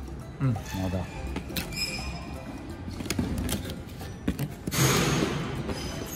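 Packing paper and film rustling in a cardboard box, with scattered light knocks and clicks, and a louder burst of rustling near the end. Background music plays underneath.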